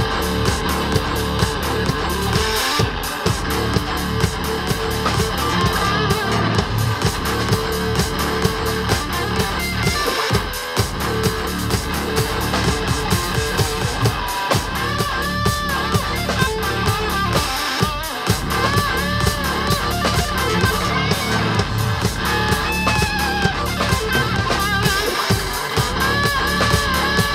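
Live EDM-rock band playing: electric guitar over a drum kit and electronic backing, loud and steady throughout. A high lead line with a wavering pitch comes in about halfway through and returns near the end.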